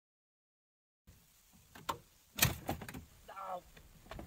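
After about a second of silence, a few knocks and one loud clunk about two and a half seconds in, then a brief voice.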